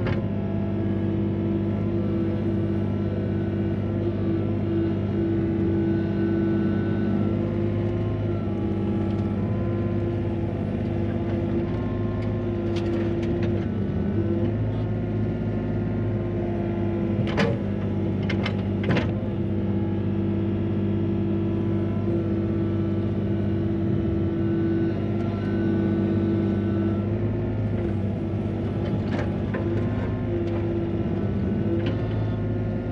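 Excavator's diesel engine running steadily, heard from inside the cab while the machine digs and loads soil. A few sharp knocks a little past halfway.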